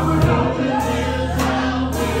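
Gospel choir singing: several voices of a church praise team, with accompaniment underneath and a steady beat about every half second.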